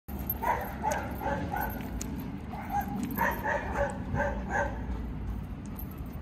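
Dog barking in quick runs of short barks: one run in the first couple of seconds, a second from about two and a half seconds in to past four seconds.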